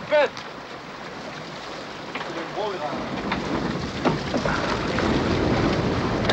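Wind and sea noise on the deck of a small boat, with short calls from men's voices, a loud one just after the start; the noise grows louder toward the end.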